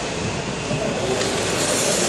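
Hockey skate blades scraping and gliding on rink ice, a continuous hiss that grows louder toward the end.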